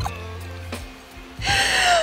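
Quiet background music with a steady bass line, then near the end a woman's loud, breathy gasp with a slight falling pitch.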